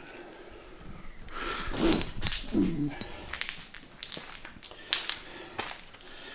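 Irregular knocks, clicks and rustles of a handheld camera being carried by someone walking, with footsteps on a concrete floor.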